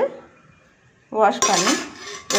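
A single sharp metallic clink from a stainless-steel kitchen vessel, about one and a half seconds in, with a short high ring after it, heard under a woman's speech.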